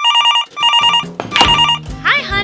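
Electronic telephone ringing: three short warbling trills, each about half a second long.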